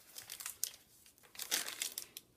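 Stiff, stained and distressed paper pages of a handmade journal being turned by hand, crinkling and rustling, with the loudest crackle about one and a half seconds in.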